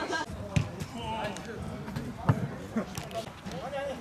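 A futsal ball being kicked on an artificial-turf court: two sharp thuds, about half a second in and again just past two seconds, with players calling out faintly.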